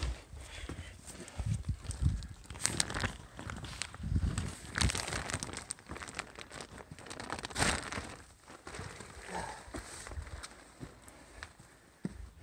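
Footsteps scrambling over loose rock debris and soft sand: irregular crunches, scuffs and knocks with occasional low thuds.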